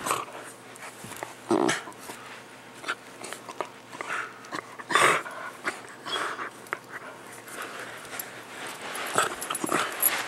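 Two dogs, a miniature pinscher and a larger dog, playing over a rope toy and tennis balls, making short dog noises in irregular bursts, the loudest about one and a half and five seconds in.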